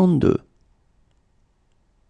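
A single voice finishing a spoken number, most likely the French "soixante-deux", in the first half-second, then near silence.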